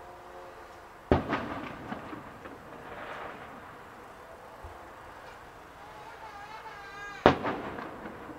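Two aerial firework shells bursting about six seconds apart, each a sharp boom followed by a rolling echo that dies away over about a second.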